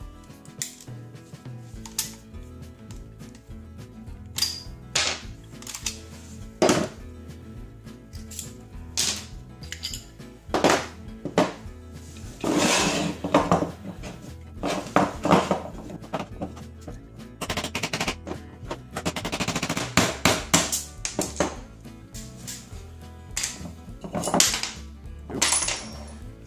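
Sharp metallic clicks and knocks of a CZ75 SP-01 pistol being stripped, with taps of a hammer on a pin punch to drive out the firing-pin roll pin, some in quick clusters. Background music plays underneath.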